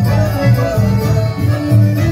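Live chamamé band playing: bandoneón and accordions holding sustained notes over acoustic guitar and a repeating bass line.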